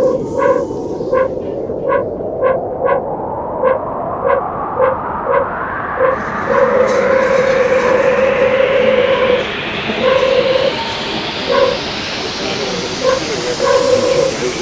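Tech house build-up: a rising noise sweep climbs steadily in pitch while a short pitched synth stab repeats in a broken rhythm. One note is held for about three seconds in the middle.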